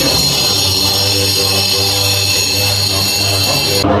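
Tibetan Buddhist monks chanting in a deep, steady drone, with a high ringing sounding over it that cuts off suddenly near the end.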